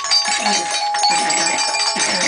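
Live experimental noise performance: several sustained ringing tones, one held from just after the start, layered over pulsing vocal sounds from a chorus of performers, about two a second.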